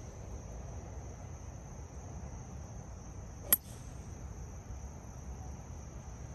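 A golf driver strikes a teed ball, making one sharp crack about three and a half seconds in. Insects buzz in a steady high drone throughout.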